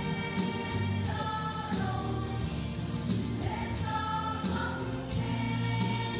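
A mixed choir singing a gospel song in long, held phrases, over a steady bass accompaniment.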